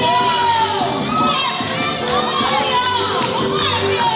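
Many children shouting and cheering together over quadrilha dance music, their voices overlapping and rising and falling in pitch.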